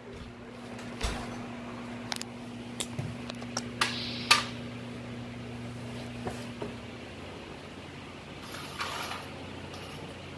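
Scattered light clicks and knocks of close handling noise over a steady low hum; the hum cuts out about seven seconds in, and there is a short hiss near the end.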